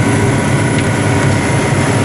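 Tractor engine running steadily under load while pulling a Lemken Heliodor disc harrow through corn stalks: a loud, even low drone with a faint steady whine.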